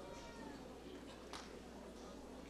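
Faint overlapping voices of a congregation praying aloud at once, with a higher voice gliding down in pitch near the start and a short sharp sound just over a second in.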